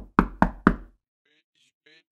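Four sharp knocks in quick succession, about a quarter second apart, each with a short low boom, like rapping on a door. Faint voice-like pitched sounds follow about a second and a half in.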